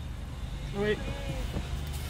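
Steady low hum of a car's running engine heard inside the cabin, with one short, sliding vocal sound about a second in.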